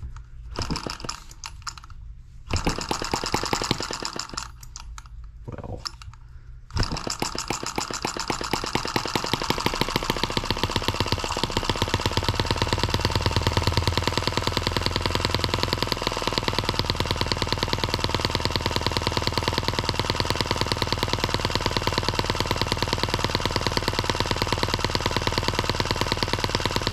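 Miniature single-cylinder M17B model gas engine being hand-started: a few seconds of spinning and short sputters, then about seven seconds in it catches and runs steadily with a rapid, even firing beat.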